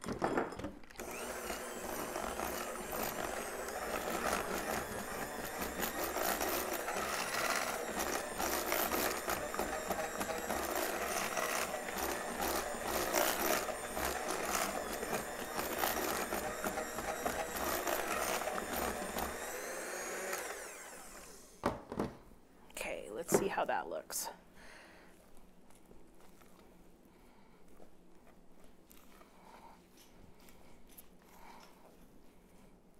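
Electric hand mixer running steadily for about twenty seconds, its beaters whipping a thick buttercream frosting in a glass bowl, then switching off. A couple of sharp knocks follow, then quieter handling sounds.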